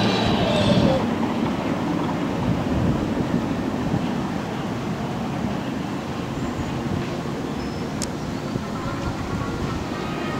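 Steady low rumbling outdoor ambience of an amusement park midway, with a single brief click about eight seconds in.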